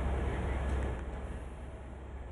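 Faint background noise with a low steady hum, fading a little in the second half.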